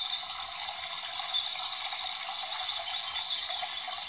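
Steady running-water background sound with a few faint, short, high chirps.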